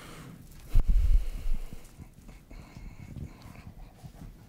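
Microphone handling noise on a lectern: a cluster of dull, deep thumps about a second in, followed by a few quieter knocks.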